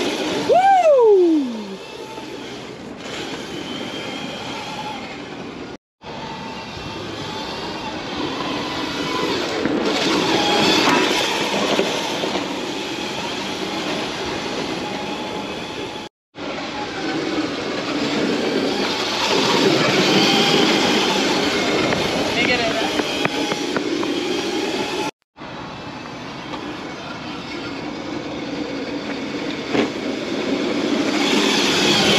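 Electric Crazy Cart drifting on asphalt: a steady rolling and scraping noise from its small wheels and casters, with a faint whine. One falling tone sweeps down about a second in. The sound drops out abruptly three times.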